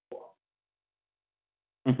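A short soft plop just after the start, then a man's brief 'mm-hmm' near the end, the loudest sound; between them the line drops to dead silence, as a noise-gated call does.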